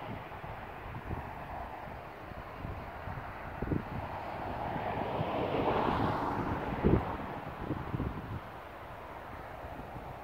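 Wind buffeting the microphone in irregular gusts, with a few sharper thumps, the strongest about seven seconds in. A broad rushing noise swells up and fades again around the middle.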